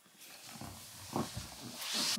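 Faint rustling and handling noise as a person shifts and leans over on the floor, growing louder near the end.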